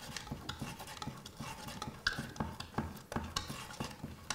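A palette knife scraping and tapping paint on a wooden palette, making an irregular run of light clicks and scrapes, several a second.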